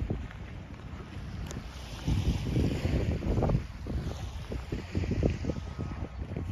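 Wind buffeting the microphone in irregular gusts, a low rumbling that grows stronger about two seconds in.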